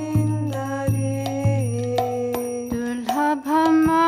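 A woman singing a Bengali devotional bhajan in long held notes that slide from one pitch to the next, accompanied by regular mridanga drum strokes and the jingle of karatal hand cymbals.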